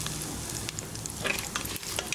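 Mustard seeds and split dals sizzling in hot oil in a steel pan as a tempering, stirred with a metal spatula. A steady hiss is broken by scattered crackles, thickest about a second and a half in.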